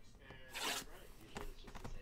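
Plastic shrink-wrap on a trading-card hobby box being scratched and torn open by hand: short rasping rips, the strongest a little past half a second in, then two smaller ones.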